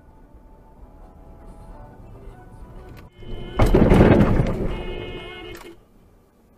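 Dashcam recording of a car crash: a sharp click, then a sudden loud impact about three and a half seconds in, followed by a crunching, scraping noise that fades out over about two seconds.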